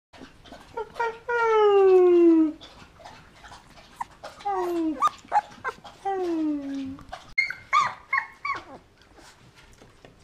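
A 20-day-old golden retriever puppy howling. It gives three drawn-out calls that slide down in pitch, the first and loudest about a second in and lasting over a second, then a few short, higher yelps near the end, with small clicks between.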